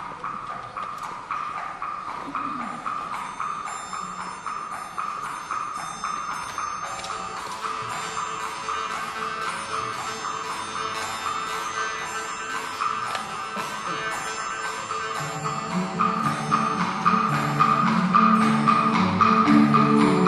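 Kazakh folk-instrument orchestra playing over a steady, even rhythmic pulse, with high sustained tones above it. About three-quarters of the way through, lower instruments come in and the music grows louder.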